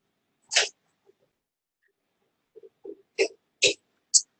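A few short, sharp breath or sniff noises from a man close to the microphone: one about half a second in and two near the end, with faint soft mouth sounds between them and dead silence in the gaps.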